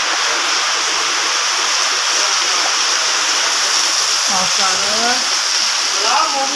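Heavy rain pouring down with water running off: a loud, steady, even rush.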